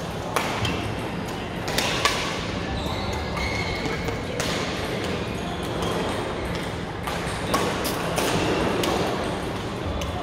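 Badminton rackets striking shuttlecocks on several courts at once, giving sharp irregular cracks, with the loudest near the start, about two seconds in and a little past seven seconds, over a steady background of play in a large hall. Short high squeaks, like shoes on the court floor, come between the hits.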